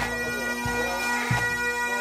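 Highland pipe band playing: Great Highland bagpipes hold a steady drone under the chanter melody, with bass drum beats about every two-thirds of a second.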